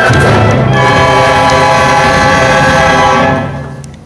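Concert wind band (woodwinds, brass and low brass) playing held, full chords, which fade away over the last second.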